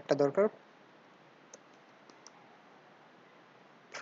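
A few faint, sparse clicks from a computer keyboard as code is typed into the editor, after a brief spoken word at the start.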